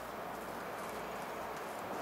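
A paintbrush working over a corrugated metal wall, with faint irregular scrapes and light taps against a steady low background hiss.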